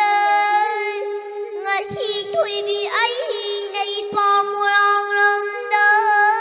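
A young girl singing, holding long notes with slow bends and glides in pitch, over a steady held accompaniment note.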